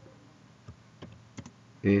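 A few separate keystrokes on a computer keyboard as text is typed, then a man begins speaking at the very end.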